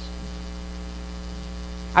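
Steady electrical mains hum, with a faint hiss, carried through a sound system.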